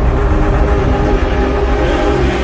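Cinematic logo-intro sound design: a loud, steady deep rumble under a held droning chord.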